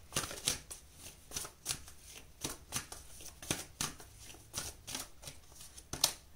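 A deck of oracle cards being shuffled by hand: a steady run of quick, irregular card snaps and flicks.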